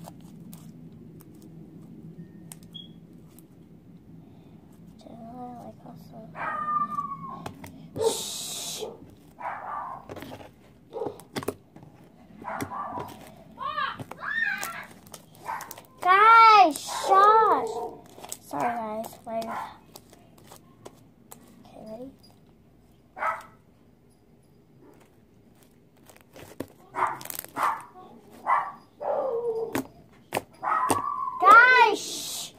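Slime being stretched, folded and pressed by hand, giving a string of sharp sticky clicks and pops. Short vocal sounds that rise and fall in pitch come and go over it, loudest about halfway through.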